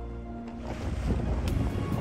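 Soft background music with held notes ends about half a second in. Gusty wind buffets the microphone over open water, with a few brief sharp rustles near the end.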